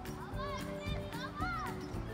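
A child's voice calling out twice, each call rising and falling in pitch, over background music with steady held notes.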